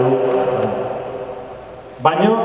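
A man's voice through a microphone and PA trails off on a held vowel, then a pause in which the sound in the hall slowly dies away before he speaks again.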